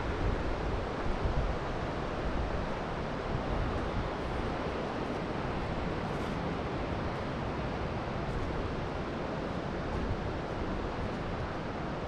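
Steady rushing noise of a flowing creek, with wind buffeting the microphone in uneven low gusts.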